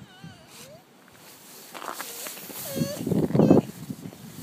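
A toddler's high, wavering voice babbling and whining, with a louder burst of sound near the end.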